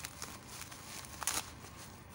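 Plastic wrapping crinkling and rustling as hands open a tightly sealed package, with a few sharp crackles, the loudest just over a second in.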